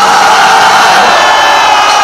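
Large concert crowd cheering and yelling in a loud, steady roar of many voices, answering the singer's call of "Are you ready?".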